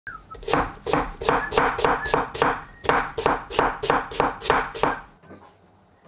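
A steady run of sharp knocks, about three a second, in two runs of seven with a short pause between them, stopping a little before the end.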